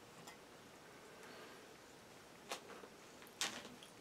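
Quiet room with two short, sharp clicks: one about two and a half seconds in, and a louder one near the end.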